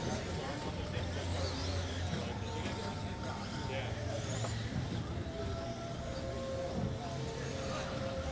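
Radio-controlled stock buggies racing on an indoor carpet track: a faint whine from their electric motors over a steady low hum of the hall, with indistinct voices.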